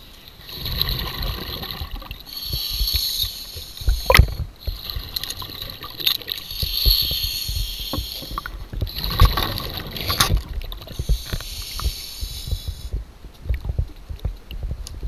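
Underwater sound of a scuba diver working on a boat hull: long stretches of hissing and bubbling from the diver's breathing and scrubbing over a low rumble. Sharp knocks come about four seconds in and again about ten seconds in.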